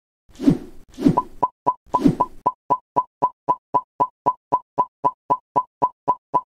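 Animated end-screen sound effects: three soft thuds with a short whoosh in the first two seconds, then a steady run of short, identical pops, about four a second.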